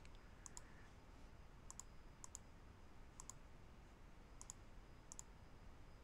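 Faint computer mouse button double-clicks: six quick pairs of clicks, a second or so apart.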